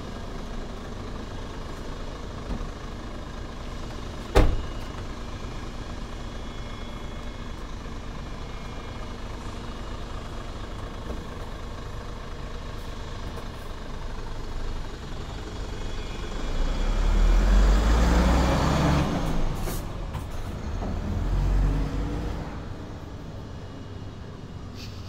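Diesel engine of a Hino 500 truck idling, with one sharp slam about four seconds in as the cab door shuts. The truck then drives off, its engine growing louder past the middle and again near the end before it fades.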